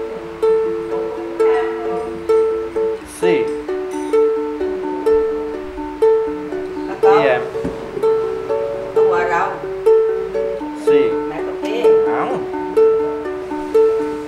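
Ukulele fingerpicked in single plucked notes, about two a second, picking out a string pattern over a G–C–Em–C chord progression.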